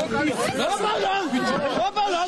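Several men's voices talking and shouting over one another in an agitated street scuffle.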